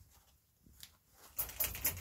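Near silence for about a second, then faint rustling and handling noise that builds up over the last half-second.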